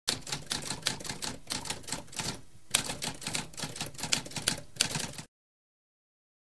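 Typewriter typing: a fast run of mechanical keystrokes with a brief pause about halfway through, stopping a little after five seconds.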